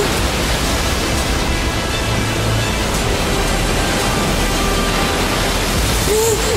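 Steady rush of ocean surf, with soft sustained notes of background music over it.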